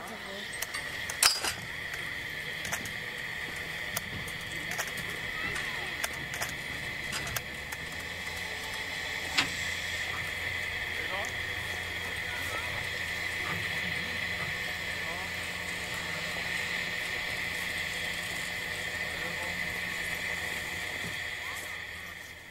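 Narrow-gauge steam locomotive 99 4511 standing with steam hissing steadily, with a faint low hum underneath. A few sharp clicks and knocks sound over it, the loudest about a second in.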